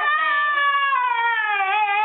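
Small dog howling in one long drawn-out note that slowly falls in pitch.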